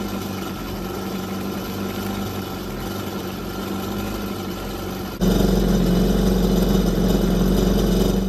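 Kawasaki Ultra 310 jet ski's supercharged four-cylinder engine idling while being flushed with fresh water through its flush port, with water splashing out of the stern. The sound steps up suddenly about five seconds in and then holds steady.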